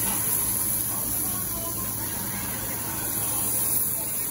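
Pieces of beef, pork and offal sizzling on a tabletop yakiniku grill over open flame: a steady, even hiss with a low hum underneath.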